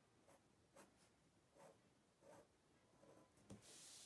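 Faint scratching of a Sharpie felt-tip pen on paper, drawing short cross-hatching strokes about once a second, with a longer stroke near the end.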